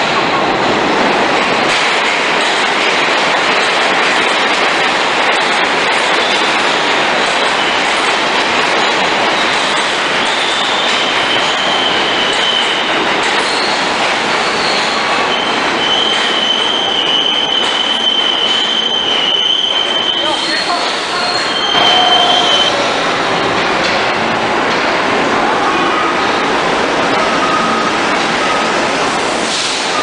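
New York City subway train running through an underground station, a loud steady rumble of steel wheels on rail. From about ten seconds in, thin high-pitched wheel squeals come and go for around ten seconds, stopping shortly after twenty seconds.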